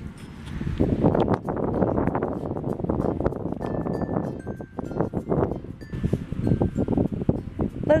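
Strong sea wind buffeting the microphone, a loud gusty rumble that rises and falls irregularly.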